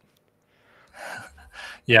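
A man's audible breath, drawn in two short pulls, just before he starts to speak with a "Yeah" at the end.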